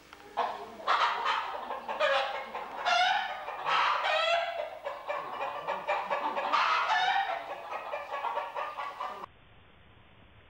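Chicken calling loudly in a long run of repeated, wavering cries. The calls start about half a second in and cut off suddenly near the end.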